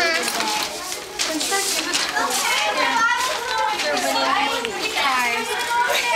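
A crowd of children talking and calling out over one another, many high voices overlapping without a break.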